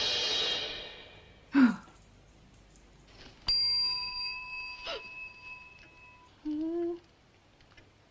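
A small hotel bell struck once about three and a half seconds in, ringing clear and dying away over about three seconds. Before it, a noisy sound fades out in the first second and a short sharp knock comes a moment later.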